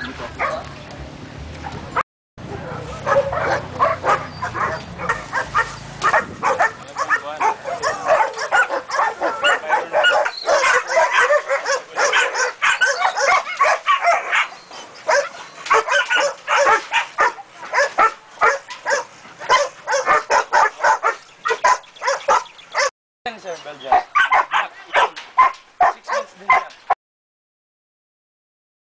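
Several dogs in kennels barking and yipping rapidly, many barks overlapping in a constant din. The sound cuts out briefly about two seconds in and again near the end.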